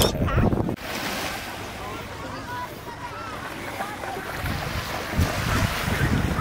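Beach ambience of small lake waves washing on the shore, with a gust of wind on the microphone at the start and faint distant voices.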